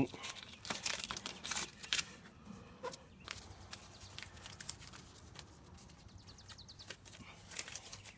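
Blue painter's tape being pulled off the roll and pressed down by hand: a run of short crackling rips and taps, busiest in the first two seconds and again near the end.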